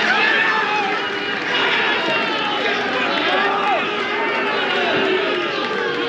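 Football crowd shouting and cheering after a goal, many voices overlapping at a steady level.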